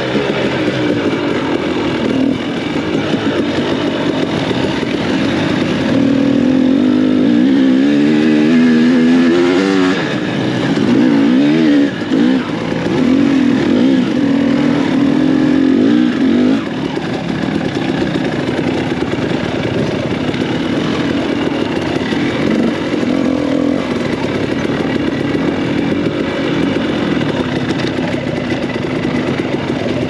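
Dirt bike engine heard from on the bike, revving up and down with the throttle while riding a rough trail. The pitch swings most and the engine is loudest between about 6 and 16 seconds in, then it runs steadier.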